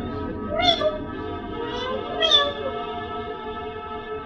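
Two short mewing calls, like a cat's meow, each rising and then falling in pitch, about a second in and just past two seconds, over a sustained music drone.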